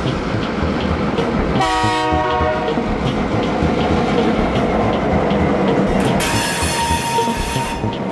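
Diesel freight locomotives passing close by, engines running with a steady, rhythmic clatter of wheels over the rail joints. A short locomotive horn blast of about a second sounds about one and a half seconds in. About six seconds in comes a high-pitched wheel squeal lasting nearly two seconds.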